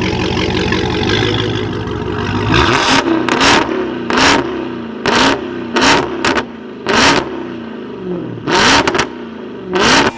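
Heavily modified Dodge Charger SRT Hellcat's supercharged 6.2-litre Hemi V8 idling steadily, then blipped about eight times from a little after two seconds in, each rev rising quickly and dropping back to idle.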